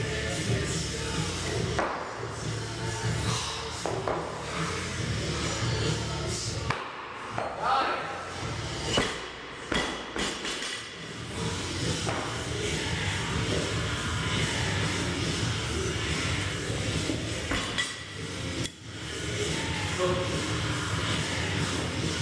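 Background music playing in a gym, with several heavy thuds in the first half of a loaded barbell with bumper plates coming down on the lifting platform.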